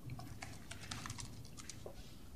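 Faint, irregular light clicks and taps, about a dozen in two seconds, over a low background hum.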